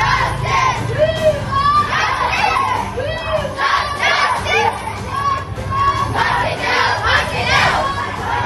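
A marching group of young voices shouting protest slogans together, the chant repeating over and over.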